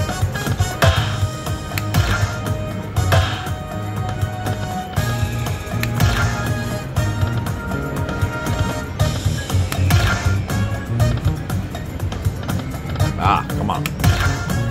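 Video slot machine playing its hold-and-spin bonus music, with reel-spin sounds and a bright chime burst every few seconds as the respins stop and chips land.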